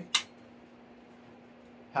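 A single sharp click of a small metal tool being picked up off the workbench, then a faint steady hum.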